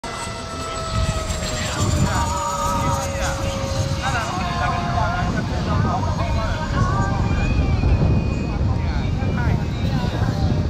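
Radio-control model airplane engine running with a steady high drone whose pitch sinks slowly over the first few seconds. Wind rumbles on the microphone underneath.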